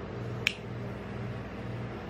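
Steady low hum of the ice cream roll cold plate's refrigeration machinery, pulsing about twice a second, with a single sharp click about half a second in.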